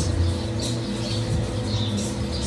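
Bubble machine running at full speed: a steady hum from its fan and motor.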